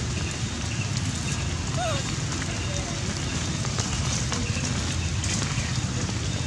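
Steady low rumbling background noise with a faint crackle running through it, and two short high chirps about two seconds in.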